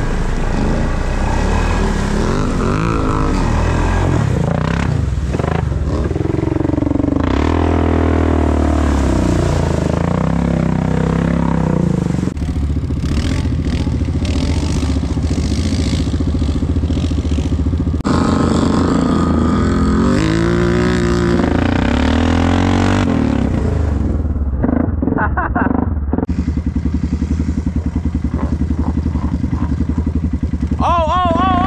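ATV engines revving hard through mud and water, rising and falling in pitch, over several edited clips.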